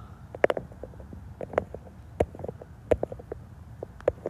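Handling noise on a handheld phone's microphone: irregular light clicks and knocks, about a dozen, over a low steady rumble.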